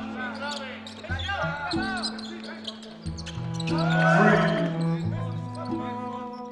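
Background music with held bass notes that change about once a second, laid over basketball game sound: a basketball bouncing on a hardwood court, with short sharp knocks and voices.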